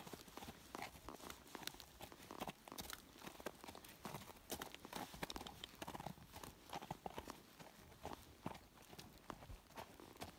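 Faint hoofbeats of a Danish Warmblood walking on hard, frozen arena ground: a steady run of irregular clicks, heard from the saddle.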